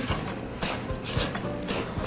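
Wire whisk stirring flour into thick cake batter in a stainless steel bowl, in repeated strokes about twice a second, with background music underneath.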